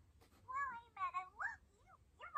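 Faint, high-pitched, meow-like vocal calls: about four short whining cries, each rising and falling in pitch.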